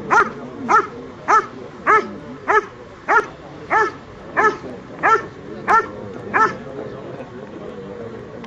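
A dog barking in a steady, even rhythm, about one and a half barks a second, as in the hold-and-bark guarding of a protection trial, facing a motionless helper with a bite sleeve. The barks stop about six and a half seconds in.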